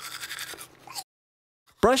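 Toothbrush scrubbing teeth: a rapid, scratchy back-and-forth brushing that fades and cuts off about a second in.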